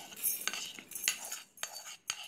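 Fenugreek seeds being scraped off a pan with a wooden spatula and dropped into an empty stainless-steel mixer-grinder jar. The sound is about half a dozen short scrapes and light clinks of seeds and wood on the steel.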